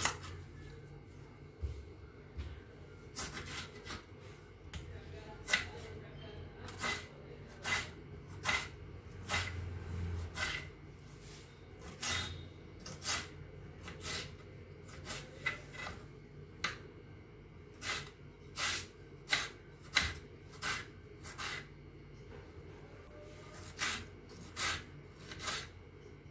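Kitchen knife chopping tomatoes on a wooden chopping board: a run of sharp knocks of the blade on the board, unevenly spaced at about one or two a second.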